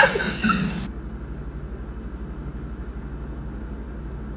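Laughter dying away within the first second, then a steady low hum of room tone.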